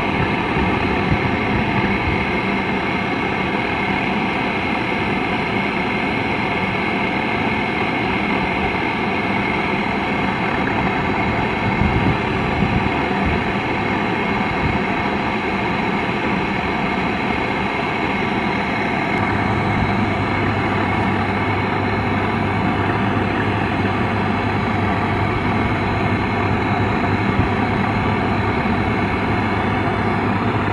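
Brazing torch flame rushing steadily as it heats a copper refrigerant-line joint on a dead air-conditioner compressor until the braze melts, to unsolder the line. A steady machine hum runs underneath and deepens about two-thirds of the way through.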